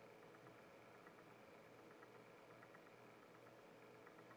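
Near silence: faint, steady room tone and recording hiss.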